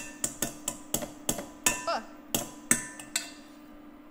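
A metal spoon clinking against a small bowl and the pan while scooping out butter: quick sharp clicks, each with a brief metallic ring, about three a second, thinning out in the last second.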